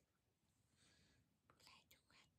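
Near silence: room tone with a faint whisper-like hiss in the middle and a few soft clicks near the end.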